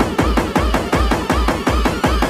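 Makina electronic dance music from a DJ session: a fast, steady kick drum, about two and a half beats a second, under short synth figures that rise and fall in pitch.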